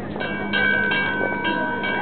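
A bell being rung, struck several times within two seconds, its clear tones ringing on between strokes.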